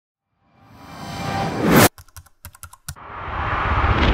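Logo-intro sound effects: a rising whoosh that swells and cuts off suddenly, then a quick run of sharp clicks over about a second, then another swell with a deep rumble building underneath.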